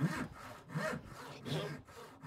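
Hand saw cutting across a softwood board in long, even strokes, a stroke about every three-quarters of a second; the saw is blunt.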